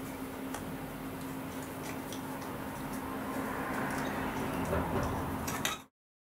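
Light metallic clicks and scraping from a T-handle hex key turning 4 mm countersunk screws into a small sensor bracket, over a steady low hum. The sound cuts off abruptly just before the end.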